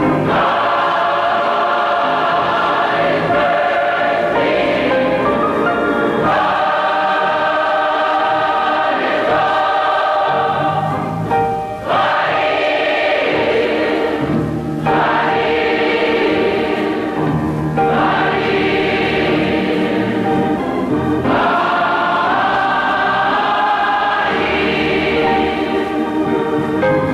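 Gospel mass choir singing in full, sustained chords, phrase after phrase, with a brief breath just before the middle. It is played from a 1969 45 rpm single.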